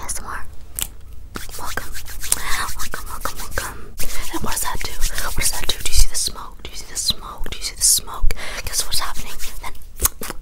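Close-miked ASMR whispering, fast and without clear words, mixed with quick hand sounds right at the microphone: fingers fluttering, rubbing and flicking, with many sharp clicks throughout.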